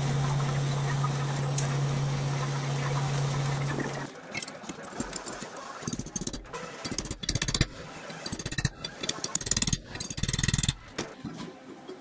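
TIG welding arc buzzing steadily on a steel steering spindle and arm, cutting off abruptly about four seconds in. Then irregular light knocks and clinks of steel parts being handled at the vise.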